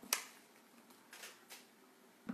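A sharp, snap-like click just after the start, then a short soft hiss and a fainter click about a second and a half in, against quiet room tone.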